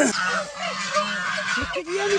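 A flock of white domestic geese honking, with many short calls overlapping. A sharp click comes at the very start.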